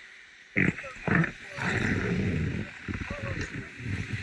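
Skis scraping on packed snow as a skier pushes off: two sharp scrapes about half a second and a second in, then a steady rumbling slide downhill, with wind rumbling on a helmet-mounted action camera's microphone.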